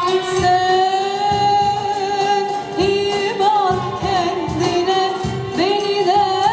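A female soloist sings a Turkish art music (sanat müziği) song with instrumental accompaniment. She holds one long note with vibrato, then sings a wavering, ornamented phrase about halfway through, and starts a new phrase near the end.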